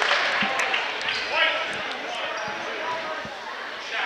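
Gymnasium crowd chatter with a few scattered thuds of a basketball bouncing on the hardwood court.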